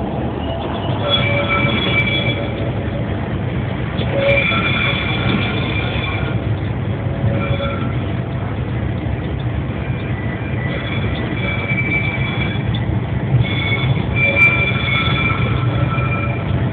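Heavy industrial machinery running with a steady low rumble, broken by high-pitched metallic squeals that come and go every few seconds.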